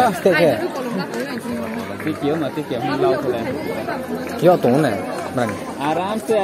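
Several people talking at once: loose, overlapping chatter of a crowd of bystanders.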